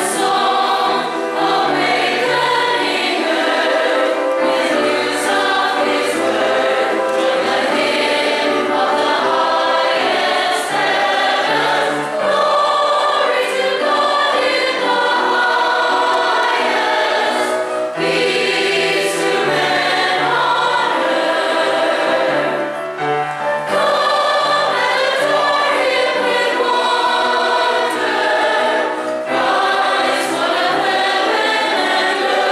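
A combined choir of young and adult voices singing together in parts, steadily, with only a short break between phrases about three-quarters of the way through.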